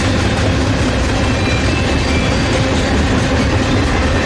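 Freight train of tank cars and covered hoppers rolling past, its wheels running on the rails in a loud, steady rumble.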